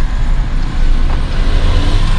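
Car running, a steady low rumble heard from inside the cabin.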